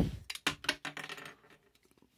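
Quick run of small plastic clicks and snaps from the jointed parts of a Transformers Rhinox action figure being worked by hand, as its hands are flipped out during transformation.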